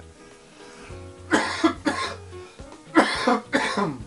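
A man coughing in two short bouts of several coughs each, the first about a second in and the second near the end, over quiet background music.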